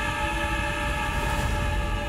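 Film soundtrack audio: a horn-like chord of several steady held tones over a low rumble.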